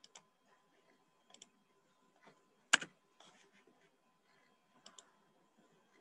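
A few faint, separate clicks of a computer mouse, the sharpest about halfway through.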